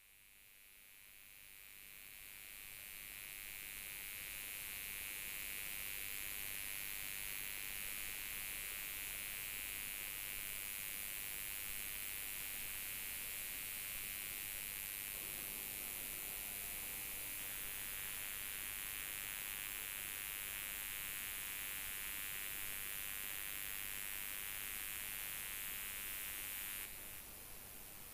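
Faint, steady hiss of static with no speech: the audio has dropped out, leaving only electronic noise. It fades in a couple of seconds in and holds even until near the end.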